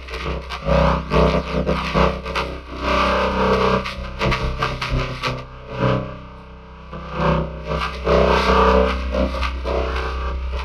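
Heavily distorted, effects-processed audio clip: a loud, dense, crackling wall of sound with a guitar-like, overdriven tone and a heavy low hum, surging up and down in loudness.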